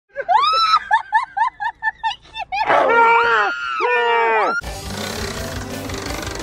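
A high-pitched voice in quick, evenly repeated syllables, then longer sliding cries, before intro music starts suddenly about two-thirds of the way through.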